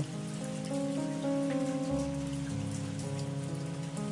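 Soft background music of sustained chords that shift every second or so, with a lower bass note coming in about halfway. A steady, rain-like hiss lies under it.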